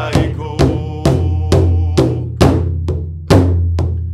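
Large powwow drum struck by the singers in a steady beat, a little over two strikes a second, each with a deep boom. One strike about three seconds in lands harder than the rest.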